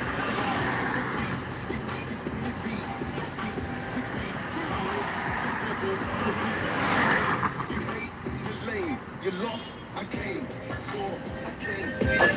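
Music from a car radio playing inside the car, with a voice mixed into it.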